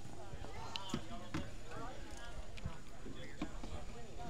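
Indistinct chatter of several people in the background, with a few light knocks scattered through it.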